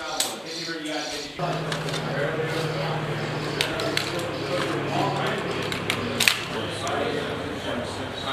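Indistinct voices talking, with a steady low hum that comes in about a second and a half in. A few sharp cracks stand out, the loudest a little after six seconds.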